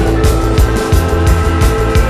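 Live band music: a steady drum beat over deep bass and held chords.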